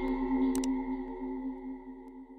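Outro sound effect: a sustained electronic ringing tone, like a struck singing bowl, fading away. A short sharp click comes about half a second in.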